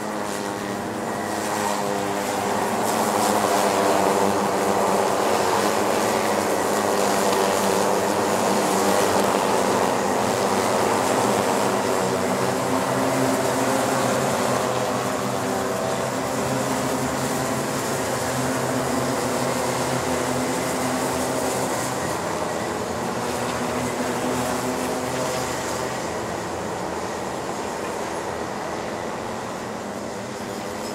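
A pack of Rotax Micro Max 125 cc two-stroke kart engines racing past at full throttle, many engines droning at once at slightly different pitches. It is loudest a few seconds in and fades slowly as the pack draws away.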